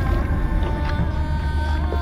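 Dark trailer underscore: a deep, steady low rumble with several held drone tones above it.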